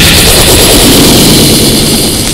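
A loud, dense wall of noise spread across the whole range, with a rumble underneath. It begins to fade near the end.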